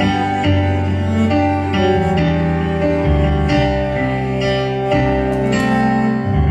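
Cello playing long bowed notes in a slow instrumental passage without singing, over an accompaniment with plucked notes.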